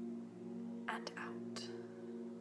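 Soft ambient meditation music: a steady drone of sustained low tones. About a second in comes a short breathy hiss close to the microphone, and another just after.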